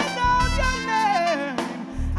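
Live band music led by trumpet and trombone playing held notes over drums, with a sliding fall in pitch about halfway through. The low end drops out briefly near the end before the band comes back in.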